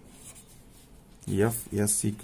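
Pen writing on paper: faint scratching strokes.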